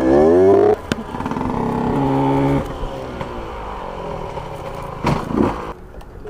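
Supermoto motorcycle engine revved hard at the start, then running on with its pitch sinking slowly and growing quieter.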